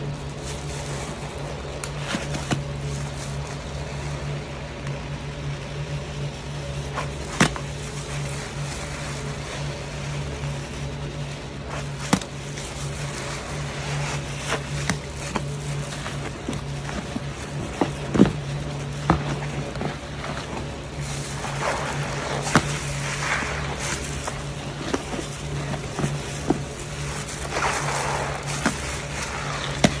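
Hands squeezing and kneading a thick paste of soaked soap and pink Pinalen pine cleaner: wet squelching with sharp pops of air, and denser bursts of squishing near the end. A steady low hum sits underneath.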